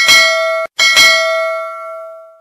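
Notification-bell sound effect dinging twice: the first ring is cut off short, and the second rings on and fades away.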